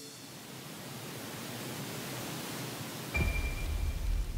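Edited transition sound effect: a noisy whoosh that slowly swells, then a deep rumbling hit about three seconds in, with a brief thin high tone over it.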